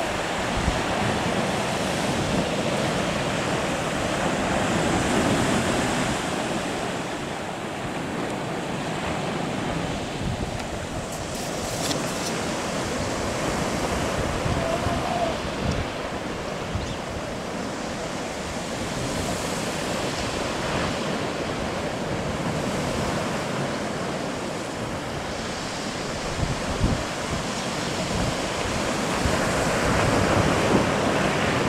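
Surf breaking on a beach, a steady rush with wind buffeting the microphone in low thumps now and then.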